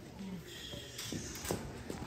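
Faint background voices of visitors in a large indoor hall, with a few soft knocks around the middle.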